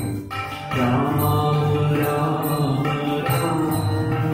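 Devotional bhajan: voices singing to harmonium and tabla accompaniment, with a brief dip in loudness just after the start.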